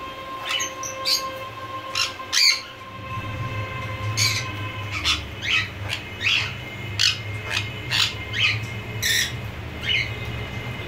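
Jenday conure giving a long series of short, shrill calls, roughly one or two a second, over a low steady rumble that sets in about three seconds in.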